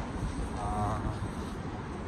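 City street traffic noise, a low steady rumble, with a brief wavering pitched tone about half a second in.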